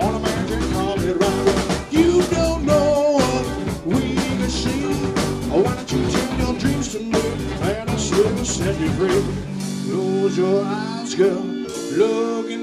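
Live rock band playing, with drums, bass and guitar. About nine and a half seconds in the drums and bass drop out, leaving held chords with a bending lead line over them.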